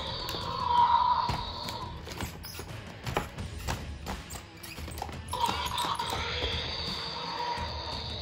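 Hard plastic toys knocking and clattering against a wooden tabletop as a large toy dinosaur figure is bashed down onto them, a series of short irregular thuds.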